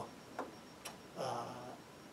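A man's drawn-out hesitation "uh" in a pause in his talk, preceded by two faint clicks about half a second apart.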